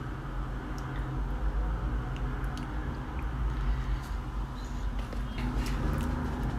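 Faint chewing of a piece of Popin' Cookin' candy sushi, with a few small soft clicks, over a steady low hum.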